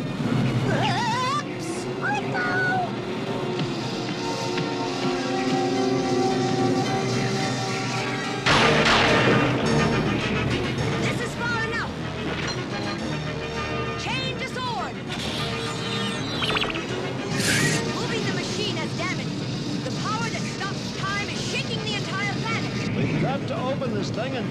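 Dramatic cartoon score with held notes, over short strained grunts of effort, and a sudden loud crash about eight and a half seconds in.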